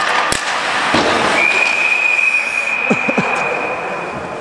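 A sharp crack just after the start, then an ice hockey referee's whistle blown in one long, steady, high note for about three seconds, stopping play.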